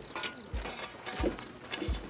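Three low thuds, evenly spaced about two-thirds of a second apart.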